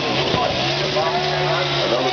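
A NASCAR stock car's V8 engine held at a steady high rev during a victory burnout, under a crowd cheering and shouting. The held engine note starts about half a second in.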